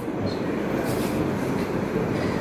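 Steady, even background noise of a meeting hall, with no one speaking.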